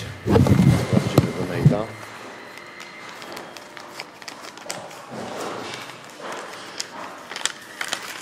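Handling noise with knocks and rustles for the first two seconds, then quieter crinkling and scattered clicks of paper as an envelope is opened and its contents handled.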